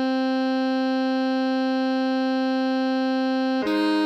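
Alto saxophone tone holding one long steady note, concert C (written A4 for the E-flat alto). Near the end it steps up to a higher note, concert E-flat (written C5).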